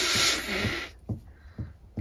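A person blowing their nose into a tissue: one noisy blow lasting about a second, followed by a few faint short sounds.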